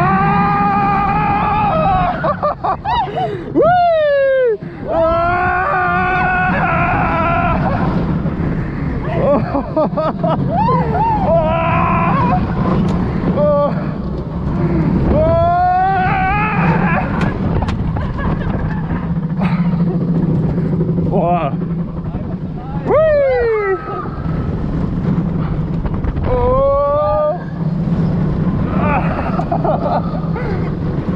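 Steel roller coaster car running along its track with a steady low rumble. Over it come a rider's repeated wordless calls and whoops, several of them long falling wails.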